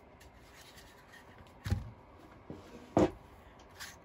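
Two short knocks, about a second and a half in and again at three seconds, with a fainter tap between, as an old wooden ruler shelf is handled on a worktable.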